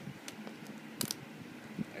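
Fingers working at the edge and seal of a product box: a handful of small, light clicks and scratches, with a sharper click about halfway through.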